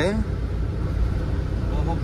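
Steady low rumble of a truck's engine and road noise heard from inside the cab while it drives along a highway.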